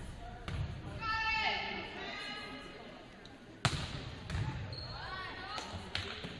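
Volleyball thuds and one sharp smack of the ball being hit a little past halfway, with players' high-pitched shouts ringing in a gym.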